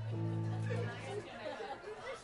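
A single low note from an amplified instrument, held for about a second and then dying away, over crowd chatter and talk.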